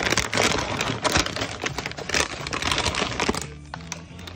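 A plastic chip bag crinkling and crackling as it is handled and chips are shaken out, a dense irregular rustle that eases briefly near the end.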